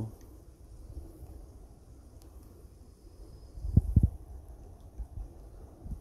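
Low background noise with a quick cluster of dull, low thumps about four seconds in, like handling knocks while a gold pan of water and black sand is being swirled.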